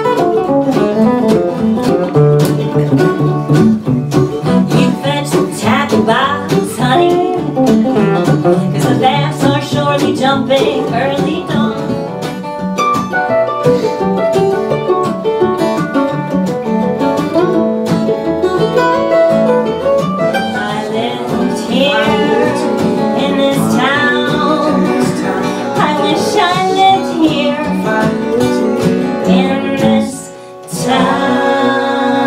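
Live acoustic folk band: two acoustic guitars and a mandolin played together, with voices singing over them.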